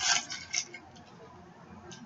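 Cardboard blind-box packaging rustling briefly in the hands in the first half second, then only faint handling.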